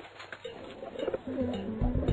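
Cartoon pigeon cooing, a few short low calls. Backing music with a bass line comes in near the end.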